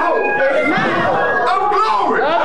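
A preacher's raised voice over a congregation calling out, many voices overlapping at once in a large hall.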